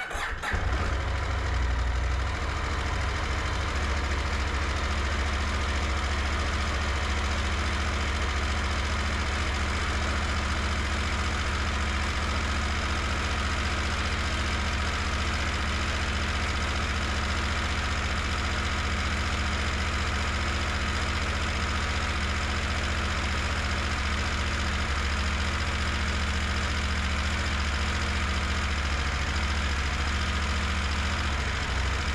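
KTM 890 Adventure's parallel-twin engine starting almost at once, then idling steadily.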